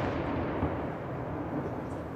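The rolling echo of a firework shell's bang, dying away slowly, with a small crack about half a second in.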